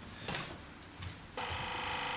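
A desk telephone ringing. After a short pause, one long ring begins about one and a half seconds in.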